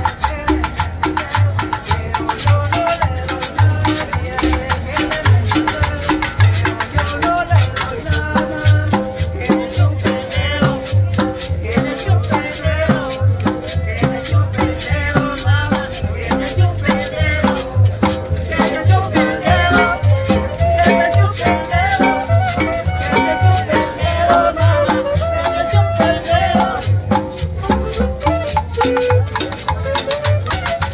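Live salsa band playing, with a plucked upright bass line and percussion keeping an even rhythm, and a girl singing into a handheld microphone.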